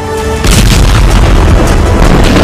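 Background music with held tones, then about half a second in a sudden loud boom that carries on as a steady deep rumble with crackle.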